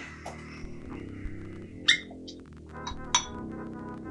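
Background music with low sustained tones, with two sharp glass clinks, one about two seconds in and another a little after three seconds, as a bottle and glass are handled at a bar.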